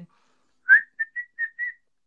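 A woman whistling a quick run of about five short notes, the first sliding up and the loudest, the rest at nearly one pitch.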